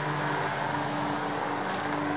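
Steady mechanical hum with a constant low drone and no distinct events.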